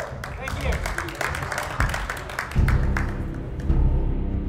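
A group of people clapping and cheering with voices over it; about two and a half seconds in, a loud, deep, sustained orchestral chord from the film score comes in and holds.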